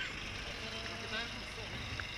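City bus driving past and pulling away, a steady low engine rumble of street traffic, with faint voices.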